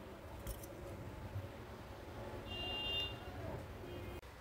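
Faint, quiet sounds of hands rubbing spice masala into raw surmai fish steaks in a glass bowl, with a short faint high beep about two and a half seconds in.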